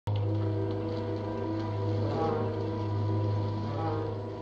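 A steady low electronic hum with layered higher steady tones that shift pitch now and then: a science-fiction spacecraft interior sound effect from a 1960s TV soundtrack.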